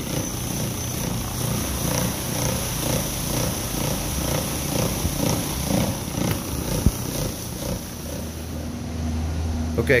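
Trinity Spider rotary brush machine agitating a wet, soapy rubber entrance mat: a motor rumble with a churning scrub that pulses a few times a second, and one sharp click about two-thirds of the way in. Shortly before the end it gives way to a steady low hum.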